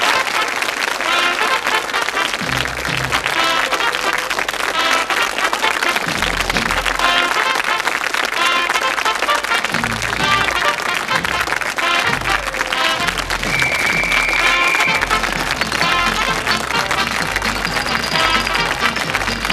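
Studio audience applauding steadily over the programme's closing theme music, whose bass line comes in about two and a half seconds in and fills out from about six seconds.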